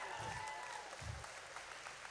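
Congregation applauding, heard faintly and slowly dying away.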